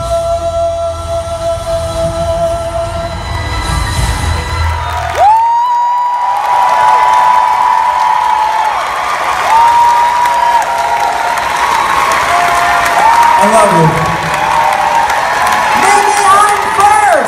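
A live band holds a final chord with bass for about five seconds. Then an audience takes over, applauding and cheering with long whoops to the end.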